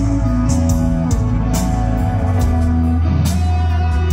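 A rock band playing live, heard from among the audience: electric guitars holding sustained notes over a steady bass, with drum and cymbal strokes at regular intervals.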